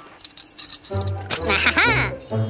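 Light metallic clinking and jangling, a cartoon sound effect, then cartoon background music with a bass line coming in about a second in.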